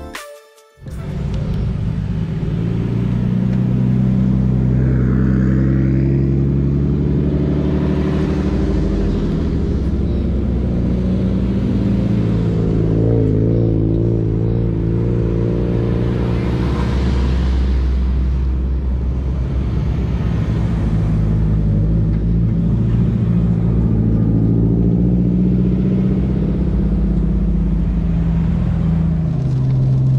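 Car engine running at a steady cruise, its drone rising and falling gently in pitch with throttle, over low road rumble.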